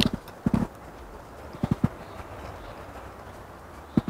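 Eating sounds close to the microphone: a handful of short soft knocks in quick clusters near the start and again just under two seconds in.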